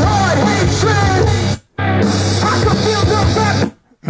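Rock song with a male singer and heavy bass playing loudly from a Tribit Stormbox Blast portable Bluetooth speaker at half volume. It drops out for a moment about one and a half seconds in and stops shortly before the end.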